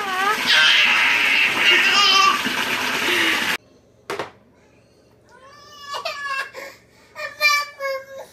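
A baby laughing loudly with high squeals, cut off abruptly a little over three seconds in. After that it is much quieter: a single knock, then a few short baby vocalizations.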